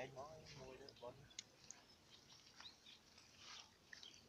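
Near silence, with a brief faint voice in the first second and a few faint scattered clicks.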